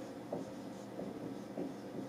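Marker pen writing on a whiteboard: a run of short strokes, several a second, as letters are drawn.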